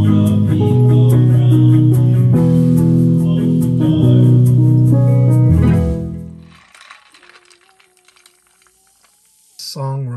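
Music with long held guitar and keyboard chords that change every second or so, fading out about six seconds in. A much quieter stretch with a faint thin tone follows, and a voice begins just before the end.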